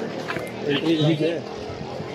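Speech only: men's voices talking in a group.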